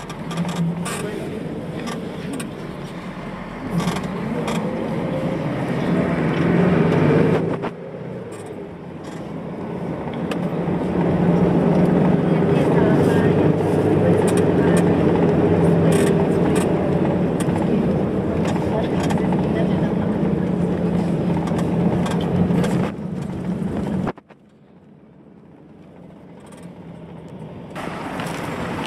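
Bus engine and road noise heard from inside the cabin. The engine climbs in pitch as it accelerates, drops back briefly about seven and a half seconds in as if changing gear, then pulls steadily under load. It falls away abruptly a few seconds before the end.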